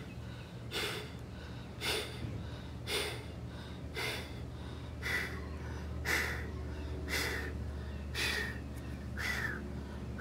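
A man breathing hard and forcefully while straining to hold a plank under the weight of a full scuba tank, about one sharp breath a second. The effortful breathing is the sign of muscle fatigue deep into the hold.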